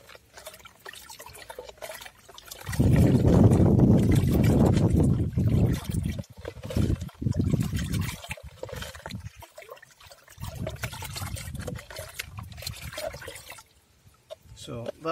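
Water sloshing and splashing in a plastic bucket as it is stirred with a plastic jug, in irregular spells, loudest from about three seconds in.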